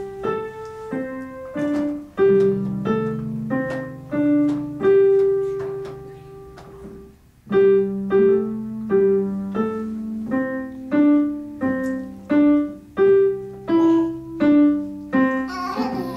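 Digital piano played by a beginner child: a simple tune of single notes in a steady rhythm, with lower notes held underneath for stretches. It stops briefly about seven seconds in, then picks up again.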